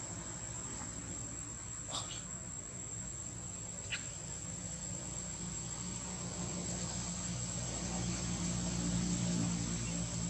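Steady high-pitched insect drone throughout, with two brief high chirps about two and four seconds in. A low hum swells in the last few seconds.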